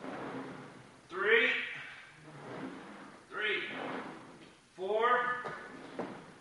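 A man's voice: three short vocal sounds spaced about one and a half to two seconds apart, in time with the exercise repetitions.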